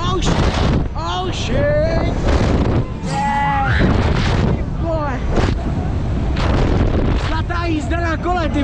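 Riders screaming and shouting on a swinging thrill ride, with one long held scream about three seconds in. Heavy wind rumble on the microphone runs underneath as the ride swings through its arc.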